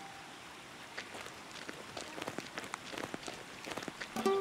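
Faint footsteps rustling through dry grass: a scatter of light crackles over a soft hiss, growing busier after about a second.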